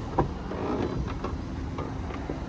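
Driver's door of a 2014 Lincoln MKT being opened: a sharp click of the handle and latch just after the start, then soft rustling and a few light clicks as the door swings open.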